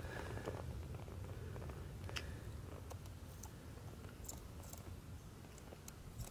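A small knife blade cutting and crumbling a soft, pressed fire-starter cube against a rock: faint crunching with a few light clicks, one sharper about two seconds in.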